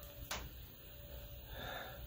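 Faint sniffing as a glass of whisky is nosed: a soft inhale through the nose swells near the end, after a small click about a third of a second in.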